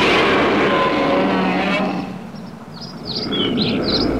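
The tail of a loud, noisy rumble with a wavering drone in it fades away over the first two seconds. Then birds chirp in short high calls.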